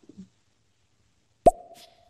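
A sharp pop about one and a half seconds in, followed by a short steady tone, as a caller's audio line opens on a live audio-chat app just before she speaks.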